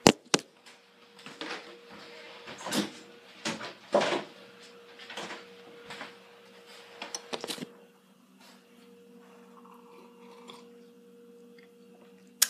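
Handling noise on the recording phone's microphone, its lens covered: two sharp knocks at the start, then scattered short rubbing and scraping sounds for several seconds, over a faint steady hum.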